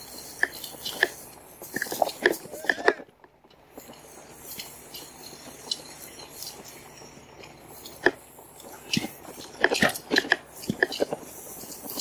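RadRover fat-tyre e-bike rolling over a rough grass track: scattered crunching clicks and rattles from the tyres and frame as it bumps through the grass. The sound drops almost to nothing briefly about three seconds in.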